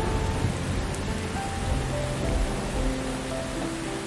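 Steady rain with slow, soft piano notes held over it and a low thunder rumble underneath that eases off toward the end.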